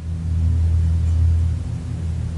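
A low, steady rumbling drone, with nothing else over it.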